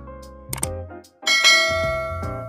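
Backing music with a quick click sound effect about half a second in, then a loud, bright bell-chime effect that starts about a second and a quarter in and rings on, slowly fading: the click-and-ding effects of a subscribe and notification-bell animation.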